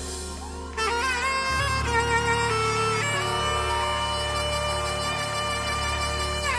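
Saxophone played live with a band: long held notes and sliding, bent phrases over a steady low bass, getting louder about a second in.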